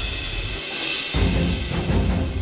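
Dramatic background music with drums. The bass drops away briefly under a swoosh, then a heavy low hit comes in just past a second in.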